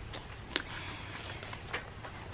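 A page of a handmade paper journal being turned by hand: a faint paper rustle with a few light ticks, the sharpest about half a second in.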